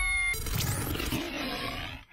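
Big-cat growl sound effect in an NRJ radio station ident, sounded as the logo's black panther leaps. It opens with a short ringing tone, then the growl fades away near the end.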